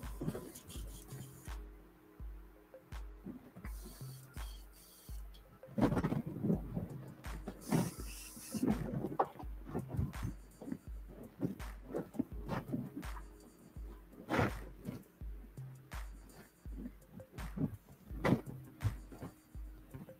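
Background music with a steady bass beat, about two pulses a second, under scattered knocks and handling clatter, with a short hiss about eight seconds in.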